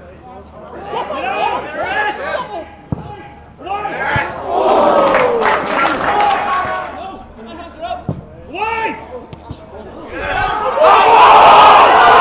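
Football spectators and players shouting, with a louder burst of yelling about five seconds in. About eleven seconds in the crowd breaks into a loud roar that keeps going.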